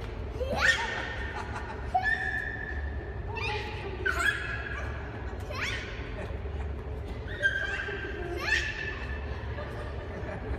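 Excited high-pitched squeals and laughing shrieks from young children, about five of them, each sweeping sharply upward in pitch, over a steady low hum of a large indoor room.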